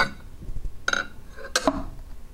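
Glass plate being laid onto a cylinder head's deck: a few short clicks and taps, the sharpest about a second and a half in.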